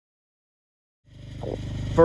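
Silent for about a second, then the steady low hum of a honeybee swarm fades in and grows louder.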